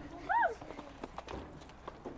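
Children's running footsteps crunching on gravel, irregular and quick, with a short high rising-and-falling shout from a child about half a second in.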